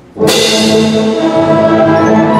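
A full concert band of brass, woodwinds and percussion comes in suddenly and loud just after the start, with brass to the fore and a crash-cymbal stroke whose ring slowly dies away under the sustained chord.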